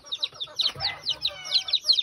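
Domestic chicks peeping, a rapid stream of short, high, downward-sliding peeps several a second.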